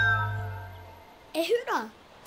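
Cartoon soundtrack: a sustained musical chord over a low bass tone fades away during the first second. Then a short high vocal sound slides down in pitch, like a small mewing cry.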